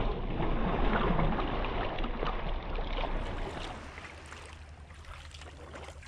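Water splashing and lapping around a sea kayak's hull, with wind on the microphone; it is louder for the first three seconds or so, then dies down.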